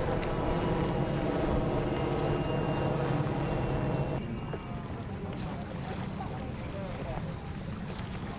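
Military helicopter flying by: a steady rotor and engine drone with a thin high turbine whine, cutting off suddenly about four seconds in. After that, a quieter mix of boat and water noise with faint voices.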